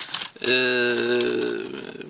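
A man's drawn-out hesitation sound, a held 'euhh' at one steady pitch lasting about a second, trailing off before he speaks again.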